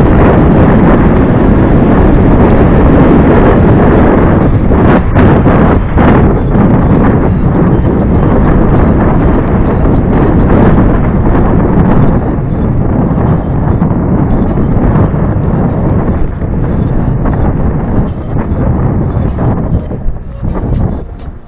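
Wind buffeting an action camera's microphone on a moving mountain bike, with the tyres rumbling over a rocky dirt trail and frequent knocks and rattles from the bike over the stones. The rumble eases a little about halfway through.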